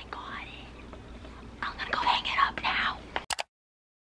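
A woman whispering in two short stretches, breathy and without full voice. A brief click about three seconds in is followed by dead silence at an edit cut.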